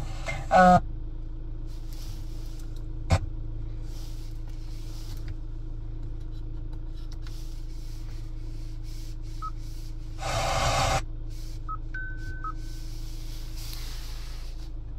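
Short electronic beeps from a Hyundai Santa Fe's dashboard head unit as its buttons and knob are pressed, over a steady low hum in the car's cabin. A single click comes about three seconds in, and a brief burst of noise is the loudest sound, a little after ten seconds.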